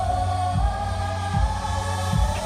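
Live concert music over an arena sound system: a long held sung note over steady bass, with deep kick-drum hits underneath.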